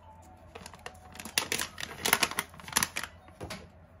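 A run of crinkles, rustles and light clicks as a foil-lined bag of loose sencha is handled and a small ceramic dish is set on a digital kitchen scale.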